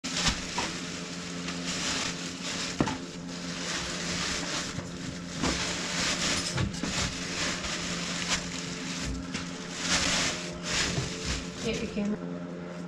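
A plastic bag crinkling and rustling as it is worked around a fuel oil filter canister, in irregular crackles over a steady low hum.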